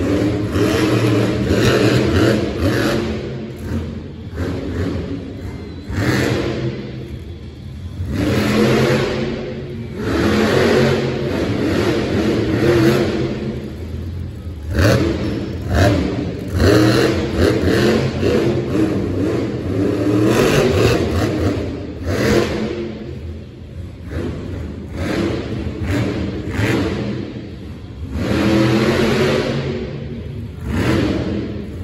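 Monster truck's supercharged V8 revving hard again and again during a freestyle run, the engine note surging up and dropping back every one to three seconds.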